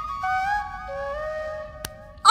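Background score: a slow melody of a few long held notes, each lower than the last, with a single faint click near the end.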